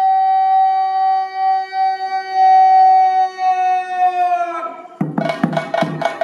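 A single long held note, steady in pitch with rich overtones, sagging slightly and dying away about four and a half seconds in. About five seconds in, chenda drums come in with a run of sharp stick strokes.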